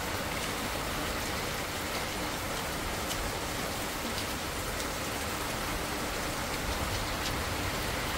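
Heavy rain falling steadily: an even, unbroken hiss with a few faint ticks of drops.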